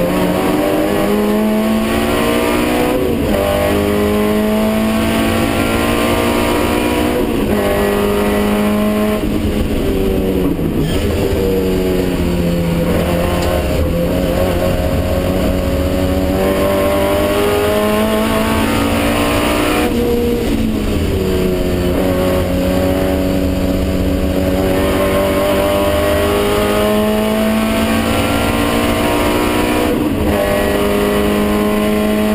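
Racing car's engine heard from inside the cockpit, running hard at speed. Its pitch climbs under throttle and drops sharply several times as the car shifts and slows into corners.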